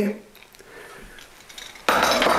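A carbon-steel knife-sharpening steel clatters as it is set down on a kitchen countertop near the end, a short metallic clink and rattle. Before that there are only a few faint ticks of handling.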